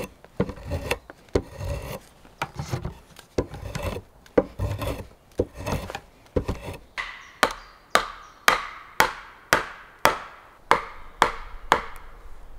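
Hand tools working wood: irregular rasping strokes on wood. About seven seconds in, these give way to a steady run of sharp tool strikes, about two a second.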